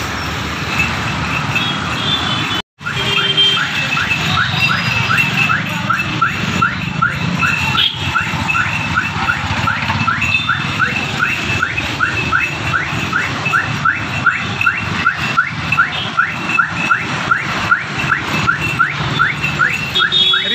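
A vehicle engine running over traffic noise, with an electronic alarm giving short rising chirps about two to three times a second from about three seconds in, like a reversing or car alarm. The sound cuts out for a moment just before the chirping starts.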